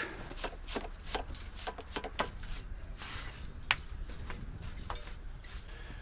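Scattered light clicks and knocks of hands and tools working on metal engine parts, irregular and about one every half second, with one sharper click a little past halfway, over a low steady rumble.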